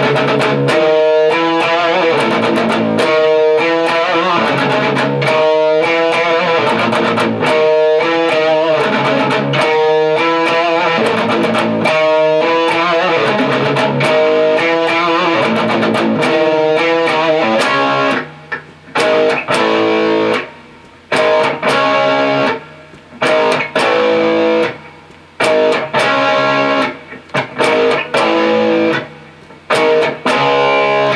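Electric guitar (Ibanez) playing a pop-rock song: chords and riffs ring continuously for the first eighteen seconds or so, then turn to choppy stop-start chords with short gaps between them.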